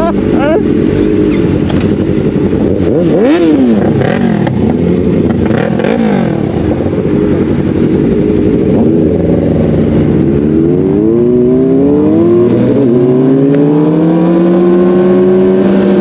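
Sport motorcycle engines revving: quick rises and falls in pitch a few seconds in and again around six seconds, then from about ten seconds a run of rising pitches as the bikes accelerate and shift up through the gears.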